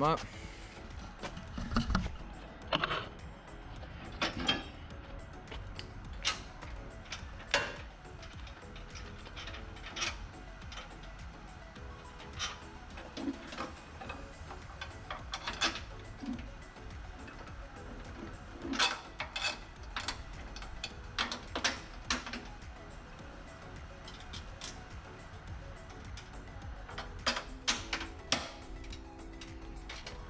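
Scattered metal clicks and knocks from a snowblower's handle assembly as the handles are raised into place and the brackets are worked by hand. They come irregularly, in small clusters, over a steady background hum.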